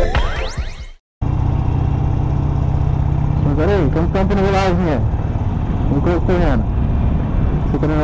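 Background music ends with a rising sweep about a second in and cuts off briefly. Then a Harley-Davidson Sportster Iron's air-cooled V-twin runs steadily while cruising, picked up with road and wind hiss on a helmet camera.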